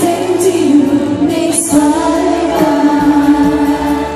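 Female singer performing a Thai pop ballad live into a handheld microphone over band accompaniment, holding long notes, with a short break in the voice a little before two seconds in.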